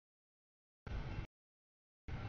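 A brief snatch, under half a second, of low rumbling noise from a passing double-stack container freight train. It cuts in and out abruptly as the audio feed drops out.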